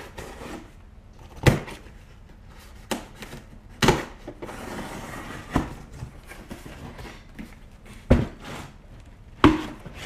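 A cardboard shipping box being opened by hand: a series of sharp knocks and taps against the box, with cardboard and tape rustling and tearing as the flaps are pulled up in the middle.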